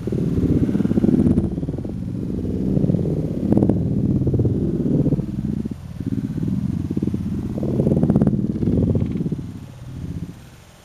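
Wind buffeting the camera microphone: an uneven low rumble that swells and falls in gusts.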